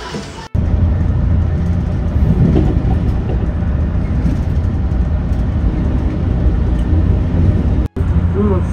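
Moving limited express train, heard from inside the carriage: a steady, loud low rumble of the train running on the rails, beginning abruptly about half a second in.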